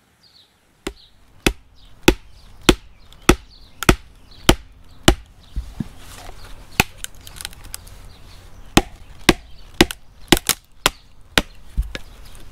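A small hammer striking a blade or wedge driven into a green log, splitting it: sharp wooden knocks starting about a second in, evenly spaced at nearly two a second at first, then irregular, with a quick cluster of blows near the end.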